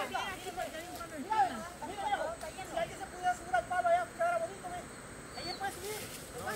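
People talking and calling out, quieter than the nearby speech, with the voices fading out near the end.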